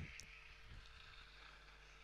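Near silence: faint background hiss with a faint steady hum.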